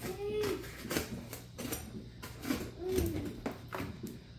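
A tape-wrapped cardboard box being cut and pried open: a run of short scrapes, crackles and rustles of tape and cardboard, and by the end a flap is pulled back.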